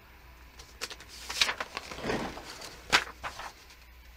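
A sheet of paper being handled and laid down onto deli paper on a worktable: a few brief rustles, with a sharp tap about three seconds in.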